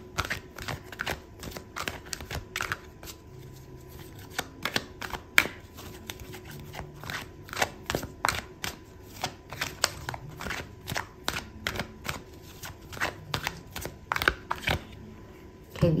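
Oracle cards being shuffled by hand: an irregular run of short card-on-card slaps and clicks.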